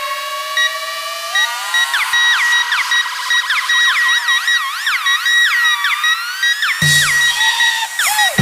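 Electronic dance remix in a breakdown with the bass cut out: a synth tone rises slowly while several synth lines waver up and down like sirens over a repeating high beep. A full low hit comes in near the end as the beat returns.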